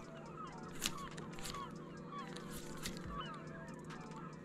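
Many faint bird calls, short and overlapping, over a steady low hum.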